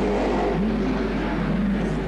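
V8 racing car engine running, its pitch rising and falling once about half a second in.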